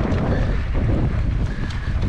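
Wind rumbling across the microphone of a camera on a moving mountain bike, with tyre noise and light clicks and rattles from the bike on a gravel dirt track.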